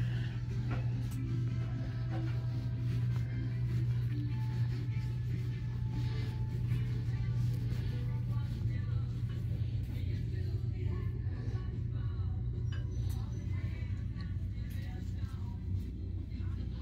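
Quiet background music over a steady low hum, the ambience of a store interior.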